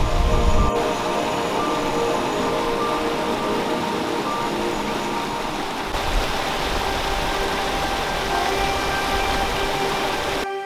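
Steady rushing of a high waterfall and the stream cascading over rocks, with soft background music underneath. The deep rumble of the water drops away a little under a second in and comes back about six seconds in.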